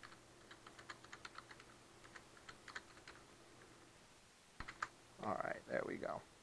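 Typing on a computer keyboard: a quick, uneven run of keystrokes for about three and a half seconds, then a couple more keystrokes near the end, where a man's voice comes in.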